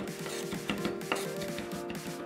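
Background music, with a few light knife taps on a walnut end-grain cutting board as freshly minced garlic is gathered up with the blade.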